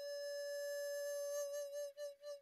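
Background music: a flute holding one long note, which starts to waver about a second and a half in and then fades away.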